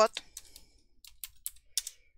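Typing on a computer keyboard: a run of light, separate keystrokes, about four a second, as a word is entered into a spreadsheet cell.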